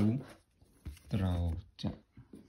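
A man speaking Thai in short phrases in a small room, with brief pauses between them.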